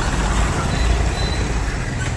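Diesel farm tractor running as it drives past pulling a trolley loaded with sand: a steady low engine rumble.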